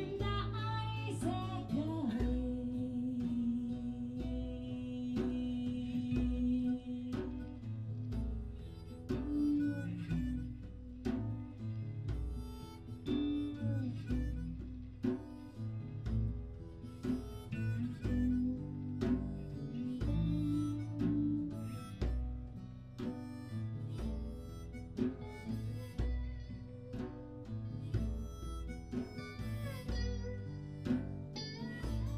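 Live acoustic band music: acoustic guitars playing with a bass line and a steady percussion beat, and a melody line with one long held note a couple of seconds in.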